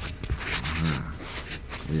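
Rustling and knocks from a phone being handled and winter clothing moving inside a car cabin, with a brief wordless vocal sound from a man about half a second in, over a low steady rumble.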